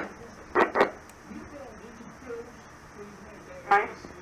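Air-band radio channel between transmissions: a low steady hiss, broken by a short double burst about half a second in and a brief snatch of voice near the end.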